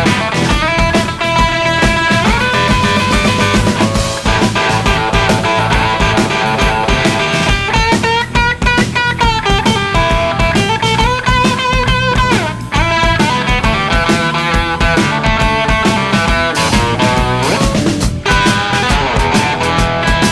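Blues-rock band playing an instrumental break: an electric guitar lead over drums, with notes that bend and slide in pitch.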